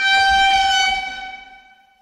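A single steady horn-like tone held at one pitch, strongest at the start and fading away near the end.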